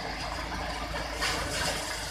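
Mahindra paddy thresher running, a steady mechanical rattle over a low rumble, briefly louder just past a second in.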